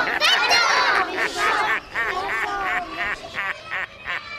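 Several young children's high-pitched voices crying out together at once, a dense overlapping outcry at first that breaks into short separate shouts over the last couple of seconds.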